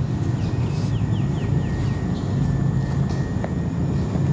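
A steady low mechanical rumble, like engine noise, with a quick run of short high falling chirps in the first second and a half.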